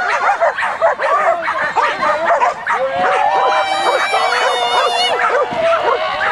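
Several excited flyball dogs held back at the start line, barking and yipping in rapid, overlapping calls, with longer drawn-out calls in the second half.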